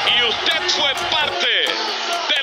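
Excited voices over background music, with no clear words. The bass cuts out abruptly about a second and a half in, as the track is edited.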